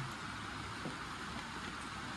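Steady background noise with no distinct event standing out.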